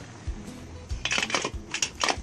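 Metal lid clattering and clinking against a steel cooking pot as it is set on, in a quick run of clatters about a second in and another near the end.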